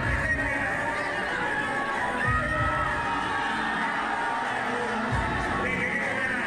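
Music playing over the noise of a large crowd, with shouts and cheering.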